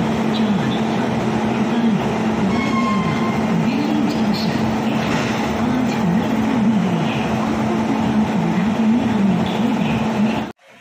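WAP-7 electric locomotive standing at a platform with its cooling blowers and auxiliary machinery running: a steady, loud hum with a lower tone that wavers up and down over it.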